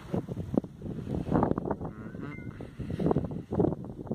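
Wind buffeting the microphone in uneven gusts.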